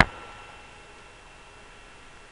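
A single sharp click at the very start, followed by a steady low hiss with a faint thin high whine.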